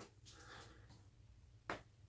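Near silence, with one short, sharp click near the end.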